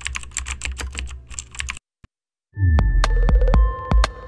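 Typing sound effect, rapid keyboard clicks over a low hum for nearly two seconds. After a short gap comes a logo sting: a loud deep hit with a falling sweep, sharp clicks and held chiming tones.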